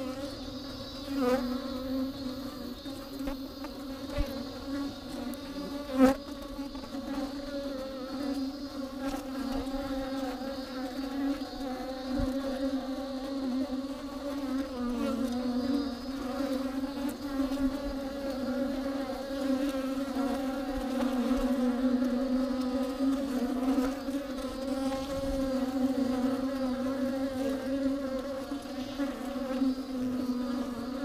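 Bees buzzing inside a hollow tree trunk: a steady, low, many-winged hum whose pitch wavers slightly. A sharp knock about six seconds in, and a smaller one about a second in.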